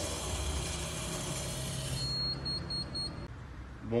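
A steady low hum with hiss, then four short high-pitched electronic beeps in quick succession about halfway through.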